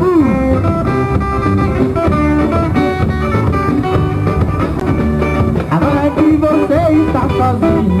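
A live band playing an instrumental passage led by electric guitars, with held and bending guitar notes over a steady bass and drum backing.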